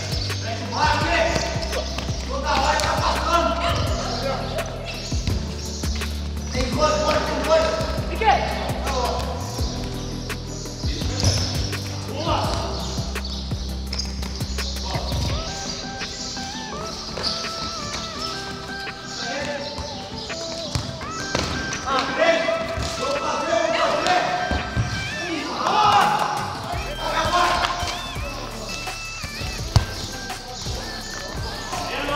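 A futsal ball being kicked and bouncing on a hard concrete court, with sharp knocks scattered through and one loud hit near the end, under players' voices and background music whose steady bass line drops out about halfway.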